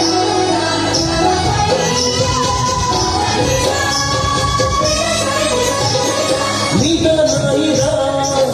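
Loud live music from a jatra stage performance, heard through the show's loudspeakers: the title song, with a singing voice over a steady beat of high percussion.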